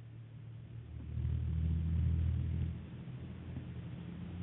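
Low droning hum heard over a telephone line, swelling about a second in and easing back a little before three seconds.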